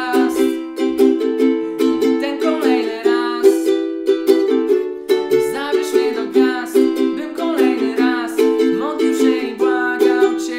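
Ukulele strummed steadily in a rhythmic pattern through a C, Am, Em, D chord progression, with a man singing along.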